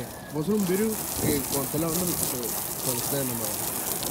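A voice over a steady hiss of spraying water.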